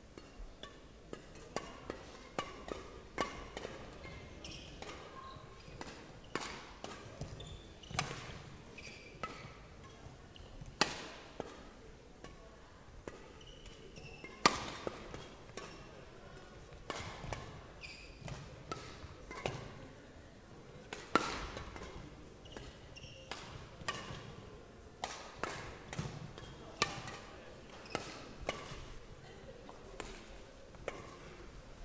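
Badminton rackets striking a shuttlecock back and forth in an irregular rally of sharp hits, the loudest about 8, 11, 14 and 21 seconds in, each echoing briefly in a large hall. Short shoe squeaks on the court floor come between the hits.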